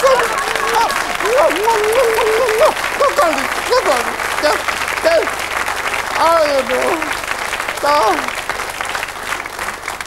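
Studio audience applauding. A man laughs and makes short vocal sounds over the clapping.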